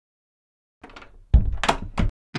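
An interior door being shut: faint shuffling, then a heavy thud about a second and a half in and a second sharp knock just after.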